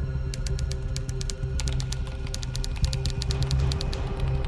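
Computer keyboard typing: quick, irregular key clicks that start shortly in and come thicker from about halfway, over a low, droning music bed.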